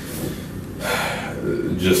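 A person's audible intake of breath, about half a second long, a second into a pause in speech, followed by a spoken word near the end.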